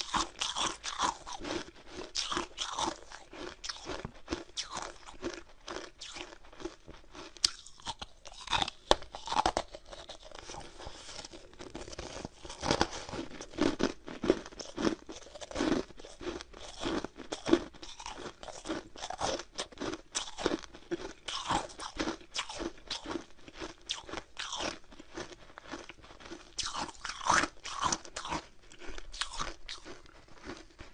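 A person chewing frosty, soft-frozen ice: a dense run of small, crisp crunches.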